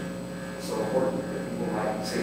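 A man speaking faintly, away from the microphone, over a steady electrical hum.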